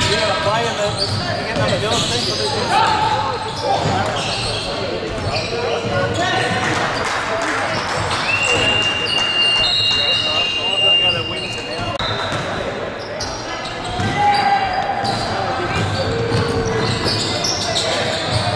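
Indoor basketball game: players' and spectators' voices echoing in a gym hall, with a basketball bouncing on the hardwood court. A steady high tone sounds for a few seconds around the middle.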